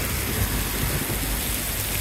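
Steady rain falling on a paved road and grass, an even hiss.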